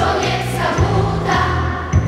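Youth choir singing a Polish patriotic song, with a steady beat of light ticks about twice a second under the voices.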